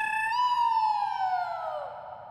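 Comic sitcom sound effect: a clean whistle-like tone held steady, then sliding smoothly down in pitch for about a second and a half before it stops.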